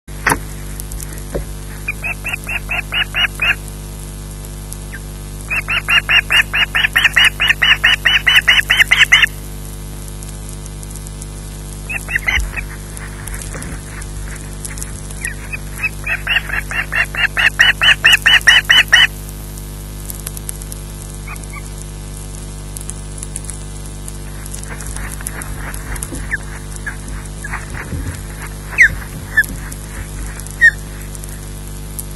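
Osprey calling in three bouts of rapid, high-pitched repeated whistles, about seven to a second, each bout building louder. Scattered single calls follow near the end, over a steady electrical hum from the nest camera.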